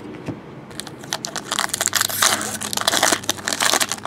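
Shiny wrapper of a Fleer Showcase hockey card pack being torn open and crinkled by hand: a dense run of crackling that starts about a second in and lasts until near the end.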